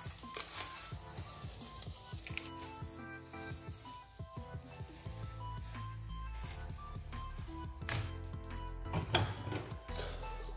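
Background music with held notes, over faint rustles and clicks of yellow painter's tape being peeled off stained wooden boards.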